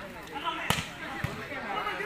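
A volleyball struck hard with a sharp slap a little under a second in, as from a spike at the net, followed about half a second later by a duller hit. Men's voices call out throughout.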